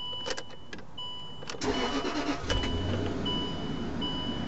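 A Land Rover LR3's engine is started: a few clicks, then about one and a half seconds in the engine cranks and catches, running on at idle. A thin electronic warning tone sounds on and off throughout.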